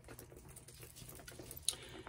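Faint handling of a leather bag strap and gold-tone chain: soft scattered clicks and rustles, with one sharper click near the end.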